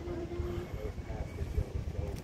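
Low, steady rumble of a boat's motor under way, with indistinct voices in the background.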